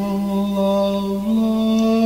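A cappella gospel quartet singing a long held note without words. The pitch steps up a little over a second in.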